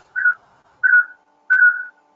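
Three short, high whistling tones at one steady pitch, about two-thirds of a second apart.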